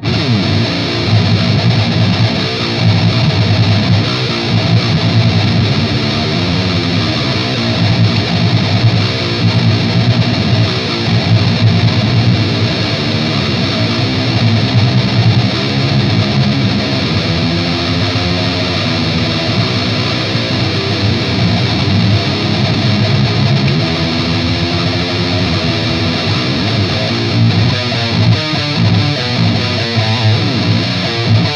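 Seven-string electric guitar with EMG pickups played through a Mesa/Boogie Dual Rectifier tube amp head and Mesa cabinet: heavily distorted high-gain riffing, loud and continuous, with a heavy low end.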